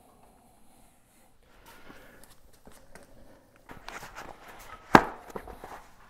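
Mountain bike tire being worked onto the rim by hand over a CushCore foam insert: faint rubber scuffing and rubbing that gets busier about halfway through, with a single sharp snap about five seconds in.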